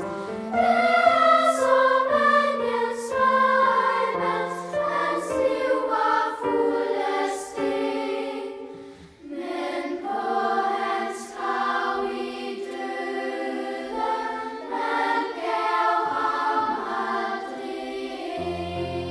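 Children's choir singing a Danish song in several parts, phrase after phrase. The singing dips briefly about nine seconds in before the next phrase begins.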